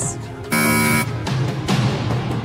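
Game-show buzzer sounding once, a flat buzz of about half a second that starts about half a second in, over tense background music.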